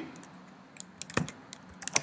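Typing on a computer keyboard: a handful of separate key clicks, unevenly spaced, as a few letters are entered.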